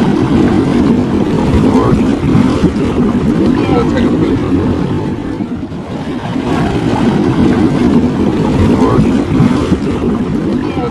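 Hot tub jets churning the water close to the microphone, a loud, steady rushing and bubbling.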